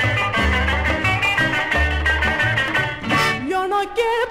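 Old Greek laïko song recording: the band plays a melody over repeating bass notes, and a woman's singing voice comes in near the end.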